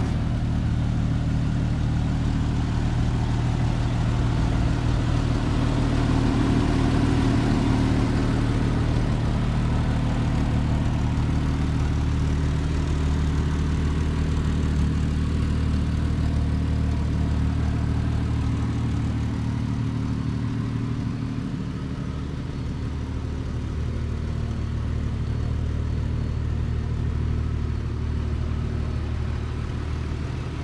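1999 Jeep Wrangler Sahara's 4.0-litre inline-six idling steadily.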